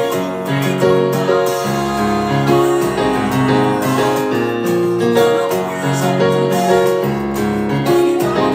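Piano sound played two-handed on an Akai MPK261 MIDI keyboard controller: steady, continuous playing of chords over low bass notes, changing every half second or so.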